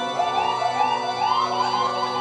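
A live rock band playing an ambient passage: held keyboard chords under a repeating high gliding figure that rises and falls in pitch several times a second, siren-like.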